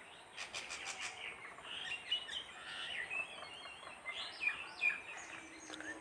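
Small birds chirping faintly here and there, with a few light clicks about half a second to a second in.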